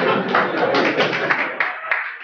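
Lecture audience applauding: a dense burst of clapping that breaks up into separate, thinning claps.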